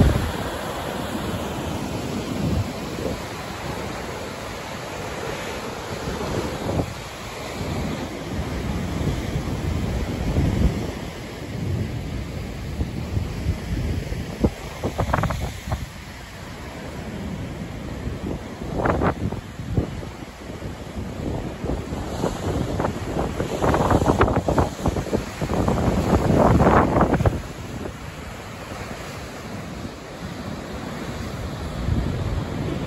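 Heavy surf breaking over rocks and washing as foam, a continuous rumbling hiss of water, with wind buffeting the microphone. It swells in louder surges, strongest in the second half.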